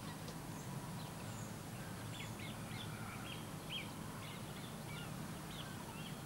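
Faint birdsong: many short chirps in quick succession over a steady low hum.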